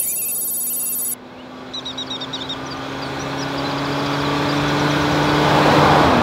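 A high, steady electronic ringing for about the first second, cut off sharply, then birds chirping and a road vehicle approaching: its steady engine hum and road noise grow louder to the end.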